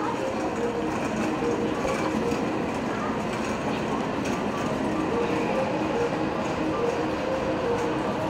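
A 381-series electric express train pulling slowly into a station platform, a steady rumble of its running gear, with a faint broken tone repeating throughout.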